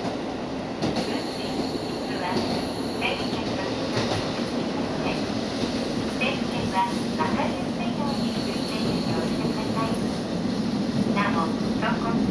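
Inside a diesel railcar under way: a steady engine drone and the rumble of wheels on the rails. A thin high whine comes in twice, about a second in and again about eight seconds in.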